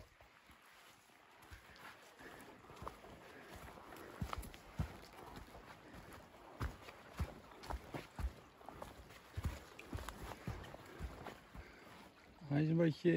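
Footsteps of a hiker walking on a dirt forest path, soft irregular thuds about twice a second that start a few seconds in, over the faint sound of a stream running.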